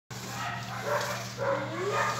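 A dog whining or yipping, two short rising calls about a second apart, over a steady low hum.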